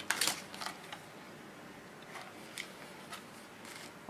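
Denim jeans and craft supplies being handled: a short, sharp rustling burst at the start, then a few soft taps and rustles.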